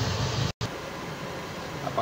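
Truck engine running, heard from inside the cab. A brief dropout about half a second in, after which a quieter steady hum continues.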